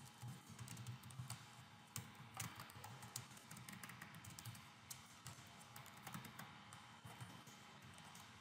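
Faint typing on a computer keyboard: a quick, irregular run of keystroke clicks as a line of code is entered.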